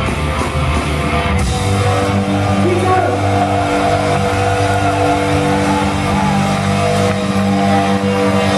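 Live rock band with amplified guitar, bass and drums playing loud. About a second and a half in the driving part stops and a held chord rings on steadily, with crowd voices over it, as the song closes.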